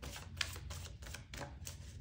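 A deck of tarot cards being shuffled by hand: a quick, irregular run of light flicks and snaps, several a second.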